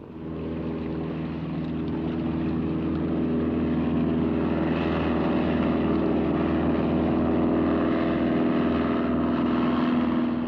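Piston engine and propeller of a ski-equipped bush plane running steadily as it comes in low to land. The hum grows louder over the first few seconds and then holds steady.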